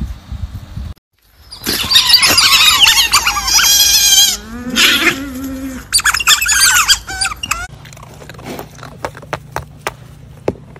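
A group of otters calling together with loud, high-pitched chirps and squeals that rise and fall, for about six seconds before stopping suddenly.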